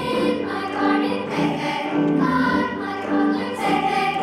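Large children's choir singing, accompanied by piano and conga drums.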